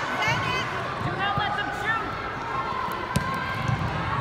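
Shouts from players, coaches and spectators across a youth indoor soccer game, with one sharp thump of the ball being kicked a little after three seconds.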